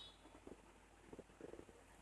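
Near silence, with a few faint, short handling sounds from fingers wrapping and pressing cotton crochet thread onto a thin wire stem.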